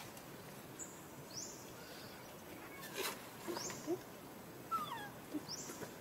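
Forest animal calls: a short, high rising chirp repeats about every two seconds, and a few faint squeaks and clicks come in the second half, the loudest a short falling squeak about three-quarters through.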